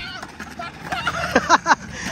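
High-pitched children's voices calling out in short, unclear cries, louder in the second half.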